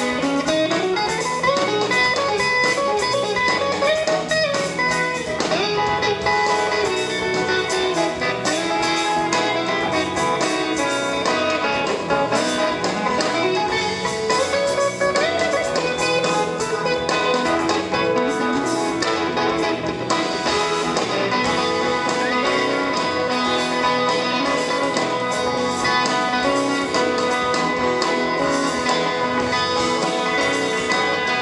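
A live band playing an instrumental passage: a guitar solo over bass guitar, with sliding notes in the first few seconds.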